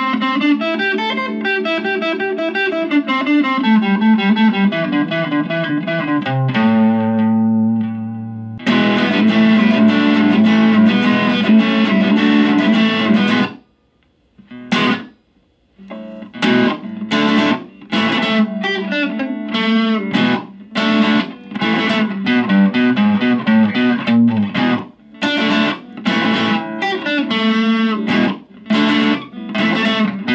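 Fender Stratocaster electric guitar played through a Boss Katana Mini practice amp on its crunch channel, with the gain at three and the volume at noon. Overdriven chords and riffs are played, with a held chord ringing out about a quarter of the way in and a brief silent break about halfway. After that come short, choppy chord stabs with stops between them.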